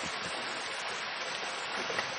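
A creek running steadily: an even rush of water.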